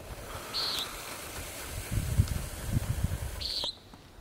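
Common nighthawk in flight giving two short, buzzy, nasal peent calls, one about half a second in and one near the end. Low, uneven rumbling runs under the second half.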